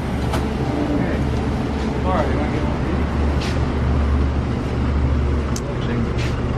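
Steady low hum of refrigerated frozen-drink dispensers and store coolers running, with faint voices in the background.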